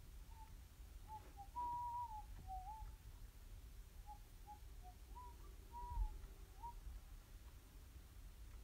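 A person softly whistling a loose, low-pitched tune of short notes that slide up and down, with one longer held note about two seconds in. A low bump is heard about six seconds in.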